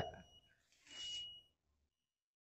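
Mostly near silence: a man's voice trails off at the start, and about a second in a faint, short hiss carries a thin, steady high-pitched whine.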